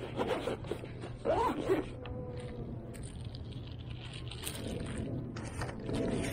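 Zipper on a fabric-covered hard carrying case being drawn shut in a few short rasping pulls.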